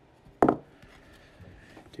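A single sharp clack of a hard plastic PSA graded-card slab being set down against other slabs about half a second in, followed by faint handling rustle.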